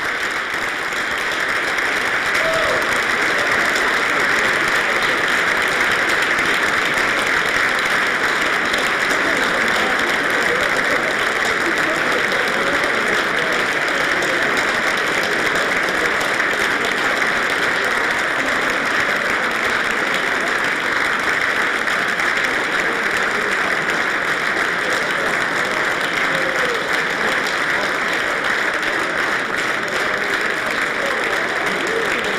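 Sustained applause from a large standing audience in a full legislative chamber, greeting an arriving dignitary; it holds steady throughout, with faint voices under it.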